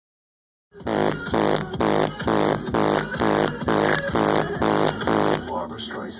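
Loud electronic music from a car's competition sound system, a repeating pulsing beat a little over twice a second. It starts suddenly just under a second in and drops away briefly near the end.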